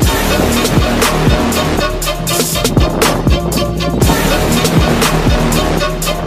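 Background music with a steady beat, about two deep bass hits a second.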